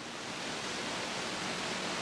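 Steady, even hiss of room and recording noise, growing slightly louder across the pause.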